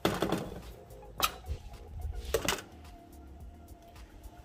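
Three sharp knocks and clatters, about a second apart, from a metal sheet pan being handled on its way into the oven, over soft background music.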